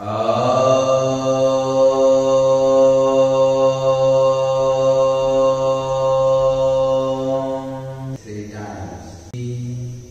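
A man chanting one long syllable on a single steady low pitch, held for about eight seconds; then the sound changes and ends in a short low hum.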